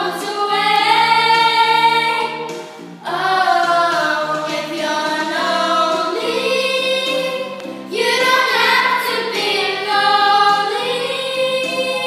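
A small group of children singing a song together, with short breaths between phrases about three seconds in and again near eight seconds.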